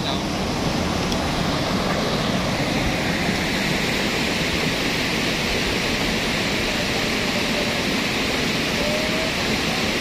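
Steady rushing of a cold lahar, a fast-flowing volcanic mudflow of water and sand, running down a river bed.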